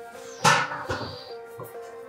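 Background music with sustained, held notes, and a short sharp noise about half a second in that stands out as the loudest sound.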